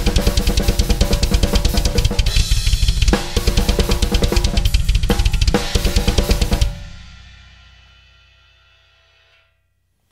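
Drum kit playing a fast metal blast beat with flam-tap-style sticking: alternating hi-hat and snare strokes split between the two hands, over constant double-bass-pedal kicks. The playing stops abruptly about seven seconds in, and the cymbals ring on, fading out over the next couple of seconds.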